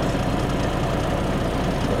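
Dump truck's diesel engine idling steadily, heard from inside the cab.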